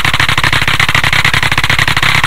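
Loud digital glitch audio: a harsh, buzzing stutter of about twenty rapid clicks a second, repeating without a break.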